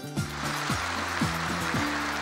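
A hall of people applauding, the clapping setting in all at once. Underneath is background music with low notes that slide down again and again.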